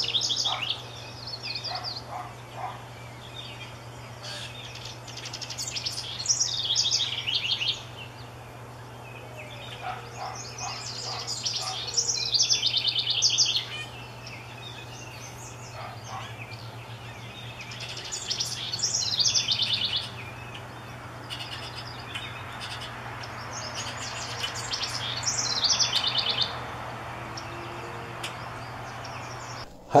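House wren singing: a rapid, bubbling, trilled song about two seconds long, repeated roughly every five to six seconds.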